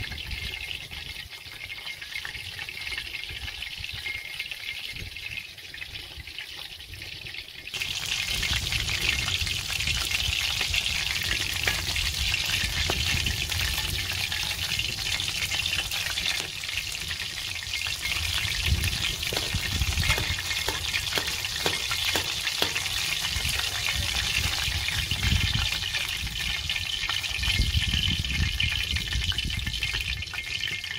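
Breaded fish fillet frying in a pan of hot oil: a steady sizzle full of fine crackles. It starts abruptly about eight seconds in, after a quieter hiss.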